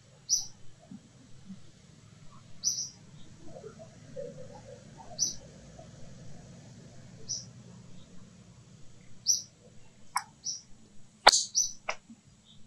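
A bird calling in the surrounding trees: short high chirps repeated about every two seconds, over a faint low background hum. A single sharp click near the end is the loudest sound.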